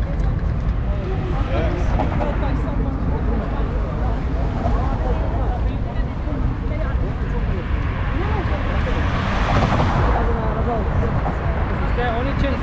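City street ambience: passers-by talking over one another, with a steady low rumble of road traffic. A louder swell of traffic noise comes about three-quarters of the way through.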